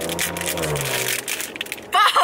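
Plastic postal mailer bag crinkling and tearing as it is pulled open by hand: a rapid run of crackles.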